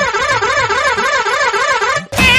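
A steady warbling horn-like tone whose pitch swings up and down about three times a second: a siren-like horn sound effect.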